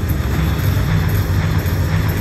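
Regal Riches video slot machine playing its wild-symbol effect, a loud, low, noisy rush as wild symbols are added to the reels during the free games.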